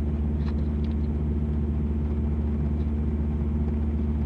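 Idling truck engine: a steady low hum that holds unchanged throughout, with a faint click about half a second in.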